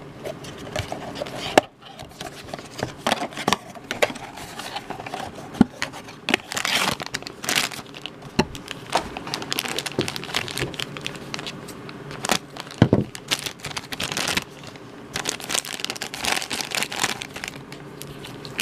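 Cardboard blind box being pulled open, then a black foil blind bag crinkling and crackling in the hands as it is opened and a small vinyl figure is taken out.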